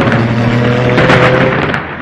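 Intro sound effect of thunder crackling and rumbling over a steady droning tone, easing off slightly near the end.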